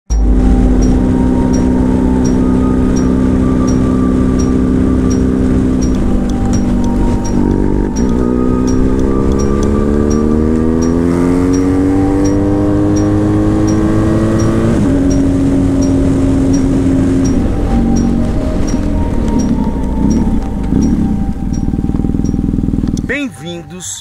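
Motorcycle engine running at road speed. Its pitch climbs steadily as it accelerates through a gear, drops suddenly at an upshift, then holds steady, before cutting off abruptly near the end.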